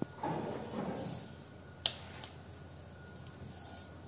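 Quiet kitchen handling sounds as teaspoons of sugar go into mango puree in a stainless steel saucepan: a soft rustle early on, then a single sharp clink of a metal spoon a little under two seconds in, followed by a lighter tap.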